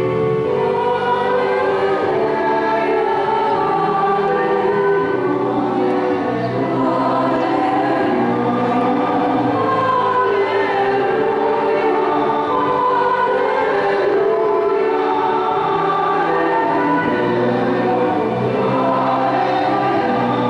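A choir singing a hymn, with sustained notes that carry on without a break.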